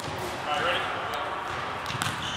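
Basketball bouncing on a gym floor: a few separate sharp thuds about a second apart.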